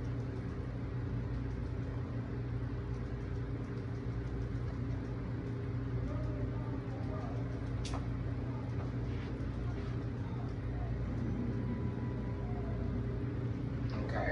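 Steady low mechanical hum, with a single sharp click about eight seconds in.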